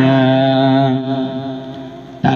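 A man's voice through a microphone holding one long, steady sung note that fades away near the end.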